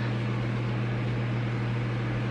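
Small electric desk fan running, a steady motor hum with an even rush of air.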